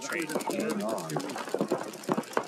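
Paintball markers firing rapidly off the break, an even stream of many sharp shots a second from several guns at once.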